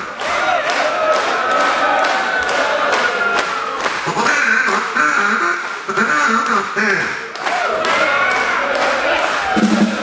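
A man's voice through a stage PA, vocalising without words and sliding up and down in pitch, over an even beat of sharp strokes about two to three a second.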